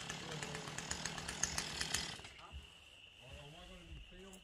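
A chainsaw running in the background: a fast buzzing rattle that stops about two seconds in, after which faint voices are heard.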